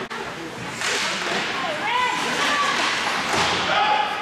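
Ice hockey play: skates scraping across the ice in hissing bursts, with players shouting.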